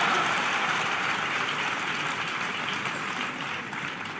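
Large audience applauding, loudest at the start and slowly dying away.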